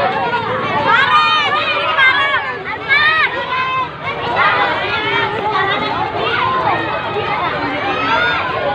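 A crowd of children's voices shouting and calling out together, many overlapping.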